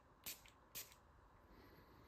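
Cologne spray bottle's atomizer spraying twice into the air, two short hissing puffs about half a second apart, then faint room tone.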